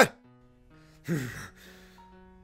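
Soft background music holding a few steady notes; about a second in, a single short breathy gasp from a person's voice, falling in pitch.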